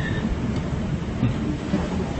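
Steady background noise in a room: an even low rumble and hiss with no clear events, picked up by a phone's microphone.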